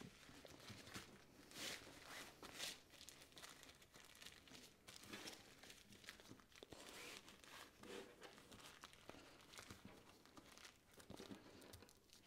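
Faint, irregular crinkling and rustling of a thin single-use plastic shopping bag being folded and pressed flat by hand.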